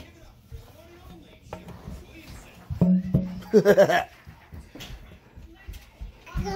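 Television audio: background music and speech, with a loud, high voice about three and a half seconds in.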